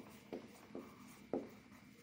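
Marker pen writing on a whiteboard: a few short, faint strokes.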